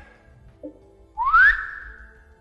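A single whistled note, rising steeply in pitch about a second in and then held briefly as it fades. It imitates a tennis ball being tossed up for a serve.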